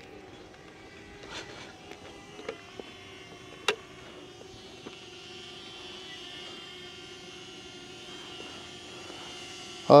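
A DJI Flip drone hovering, its propellers giving a faint steady hum with several tones. A few light clicks sound over it, the sharpest nearly four seconds in.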